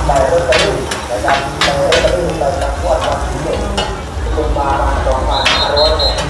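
Two metal spatulas clattering and scraping against a large flat steel griddle pan, striking it again and again, about twice a second, while food sizzles on it during stir-frying.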